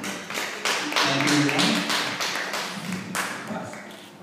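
Audience clapping, the applause thinning out and dying away over the last second or so.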